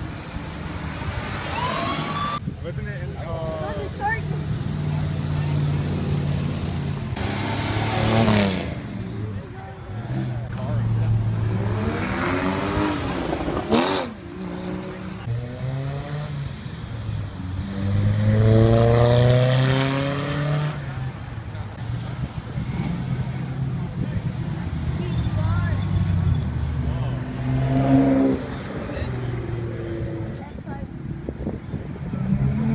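A series of sports cars accelerating hard past one after another, each engine revving up in rising sweeps of pitch and falling away. The first to pull away is a Mercedes-Benz SLS AMG with its V8, and the loudest pulls come in the middle of the stretch and again near the end.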